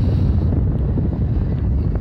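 Strong wind buffeting the microphone: a steady, loud, low rumble.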